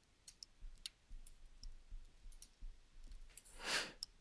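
Faint, scattered clicks of a stylus tapping on a tablet screen while a written symbol is erased and corrected, followed near the end by a short breath in.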